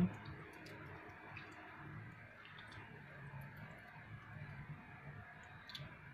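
Thin cooked glutinous rice flour paste pouring in a slow stream from a pot onto cut cabbage and carrots: a faint, even pattering with small scattered clicks.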